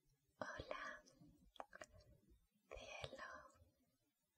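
A woman whispering softly in two short phrases, with small mouth clicks between them.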